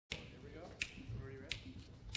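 Three sharp finger snaps, evenly spaced about two-thirds of a second apart, counting off the tempo before a jazz band comes in, over faint low voices.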